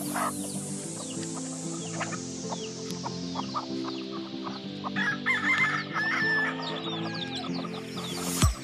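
Chickens clucking, with a rooster crowing about five seconds in, over background music with steady sustained chords.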